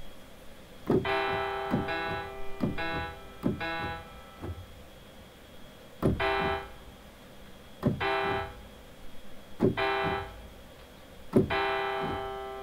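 A single key on a MIDI keyboard pressed about eight times, each press a light key knock with a software piano note of the same pitch. The first four come quickly and the rest more slowly. Most notes cut off after well under a second, but the last one near the end keeps ringing because the cheap USB-to-MIDI adapter failed to pass the note-off, leaving the note stuck.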